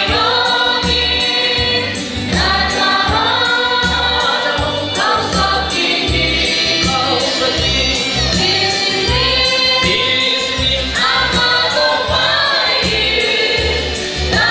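A gospel song sung by a small group of singers over amplified instrumental backing with a steady bass beat.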